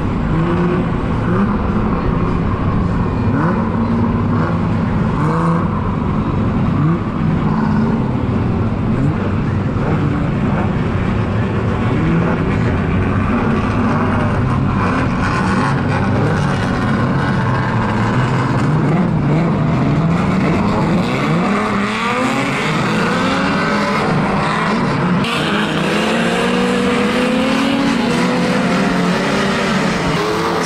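A pack of old saloon banger-racing cars running round a shale oval together, their engines overlapping in a steady drone. In the second half individual engines rev up again and again in rising sweeps.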